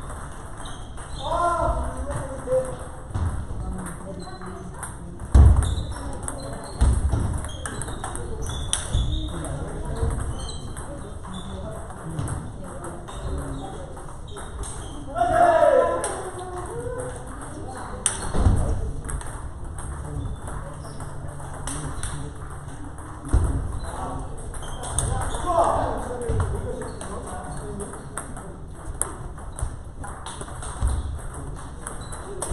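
Table tennis rallies: a quick run of sharp ball clicks as celluloid balls are struck with rackets and bounce on the tables, over the hall's reverberant background. Short voice calls break in three times, and a couple of heavy thumps, most likely feet landing on the wooden floor, stand out about five seconds in and past the middle.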